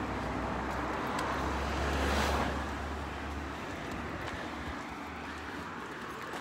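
Road traffic: a passing vehicle swells to its loudest about two seconds in, then fades into a steady traffic hum.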